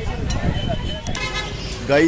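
Busy street ambience of crowd chatter and traffic rumble, with a vehicle horn sounding steadily for most of the last second.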